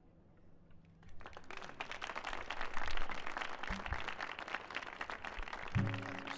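The last acoustic guitar chord rings out faintly and dies away. About a second in, audience applause starts, swells and carries on at the end of a song.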